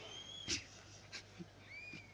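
A pause in amplified speech holding only a few faint, short high calls from an animal, one near the start and two near the end, with a couple of soft clicks.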